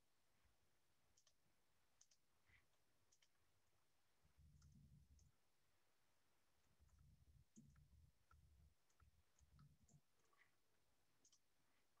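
Near silence with faint, scattered clicks typical of typing on a computer keyboard over an open microphone, and a few soft low thumps in the middle.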